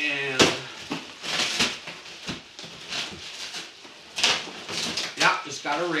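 Plastic bags and bubble-wrap packaging being handled and pulled out of a cardboard box: irregular short rustles and crinkles.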